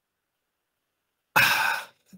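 Dead silence, then near the end a man's short, breathy sigh lasting about half a second, as he pauses while thinking over his answer.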